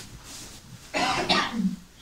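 A person clearing their throat: one rough burst about a second in, ending in a short low voiced sound.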